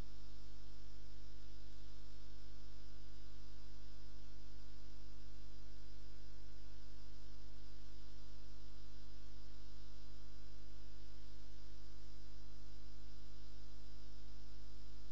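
Steady electrical mains hum: a low drone with a stack of higher overtones, unchanging throughout.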